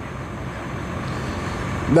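Steady highway traffic noise, growing slightly louder near the end, picked up by a reporter's microphone at the roadside.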